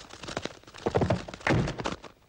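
Soundtrack effects for the moving clay hands: two dull thunks, the first about a second in and a longer, louder one just past halfway, over quick faint crackling clicks.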